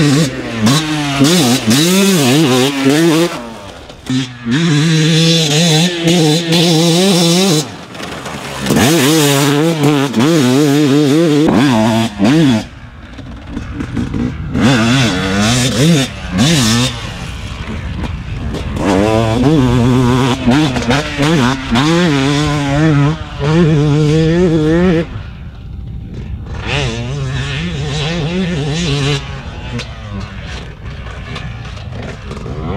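2020 Yamaha YZ250's single-cylinder two-stroke engine being ridden hard: repeated loud full-throttle bursts with the pitch rising and falling as it revs, broken by short throttle-off drops.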